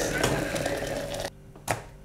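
Hot water pouring from an electric kettle into a glass French press over coffee grounds, stopping a little over a second in, then a single click.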